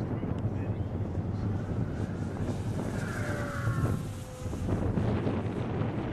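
Wind buffeting the microphone, with the faint whine of an electric RC model plane's motor and propeller passing by, dropping slightly in pitch a little past the middle.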